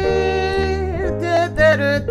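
Jazz vocal over piano and bass: a female voice holds one long note for about a second, then sings a short phrase with vibrato, over a steady bass line.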